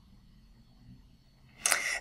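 Near silence in a pause of narrated speech, then a short breathy hiss near the end, just before the voice resumes.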